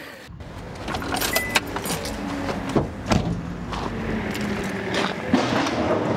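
Low, steady rumble of a vehicle with scattered clicks and knocks, heard from inside a van's cab with the driver's door open.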